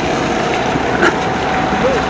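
Zenoah 22.5cc two-stroke petrol engine of an R/C model racing boat idling steadily.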